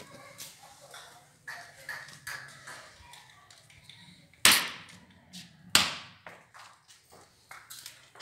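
Scattered light taps, then two loud sharp knocks a little over a second apart around the middle, each ringing briefly.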